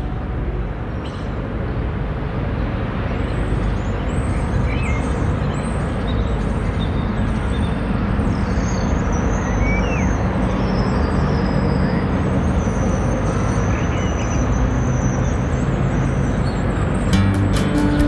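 Steady outdoor street and traffic noise, with a few faint high chirps. Music comes in near the end.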